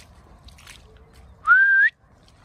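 A person's short whistle about one and a half seconds in: one loud note, under half a second long, rising in pitch.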